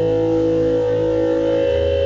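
Amplified electric guitar ringing out in long, steady sustained tones over a low amplifier hum. The low end changes about a second and a half in.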